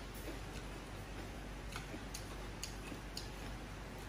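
Close-miked chewing of instant noodles with the mouth closed: faint, irregular little clicks and smacks a few times over the span.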